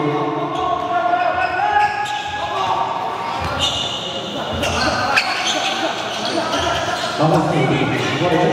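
Basketball being dribbled on a gym floor, the bounces echoing in a large hall, under players' voices shouting on court.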